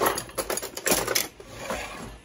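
Flour-dusted beef strips sizzling in butter in a cast iron skillet, crackling in uneven bursts of sharp pops that are loudest at the start and around a second in.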